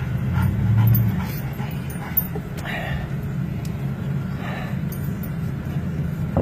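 A dog whimpering a couple of times inside a moving car, over the steady low rumble of the engine and road.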